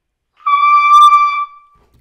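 Trumpet playing a single held high note, the high E (mi), sounded cleanly for about a second and then released. It is reached easily with the breath driven from low in the body upward.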